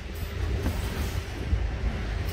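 A steady low rumble of background noise, with a faint knock from a cordless drill being set into its hard plastic carry case.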